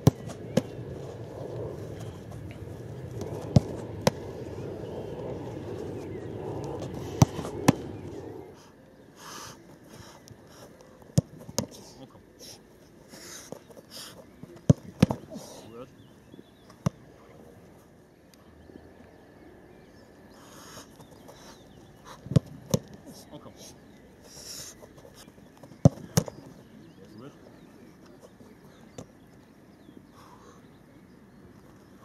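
Football being kicked at a goalkeeper and stopped by his gloves: sharp thuds, mostly in pairs about half a second apart, repeated several times.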